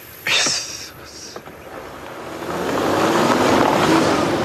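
A car pulling away on gravel, the engine and tyre noise rising over the last second and a half. A short hissing burst comes about a third of a second in.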